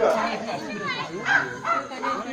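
People's voices calling out and talking, with a short high cry about a second in.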